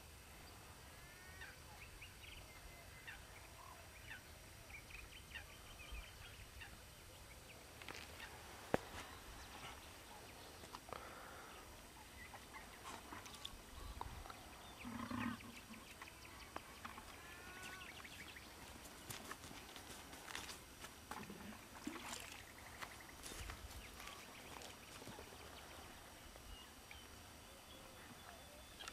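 Faint outdoor ambience of scattered bird chirps and calls, with a single sharp click about nine seconds in.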